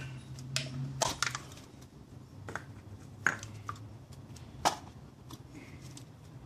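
Thin aluminium soda-can wall crinkling and cracking as it is squeezed and stretched by hand, with a few separate sharp clicks.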